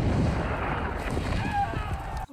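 Film battle soundtrack: a continuous din of 18th-century musket and cannon fire over a deep rumble, with a brief shouted voice near the end.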